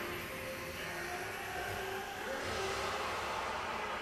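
Anime episode soundtrack playing: a steady rushing sound effect with faint music beneath it.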